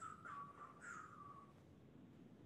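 Near silence: faint room tone over a video call, with a faint thin high tone sliding downward that fades out about a second and a half in.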